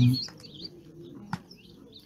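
Faint bird chirps, with a single sharp click about two-thirds of the way through.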